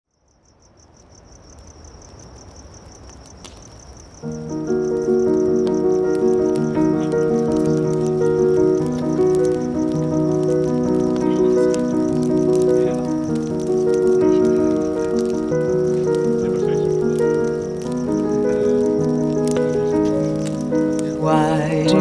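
Crickets chirping in a steady, fast-pulsing trill, fading in from silence. About four seconds in, music enters with sustained chords of layered notes over the crickets, and a singing voice begins right at the end.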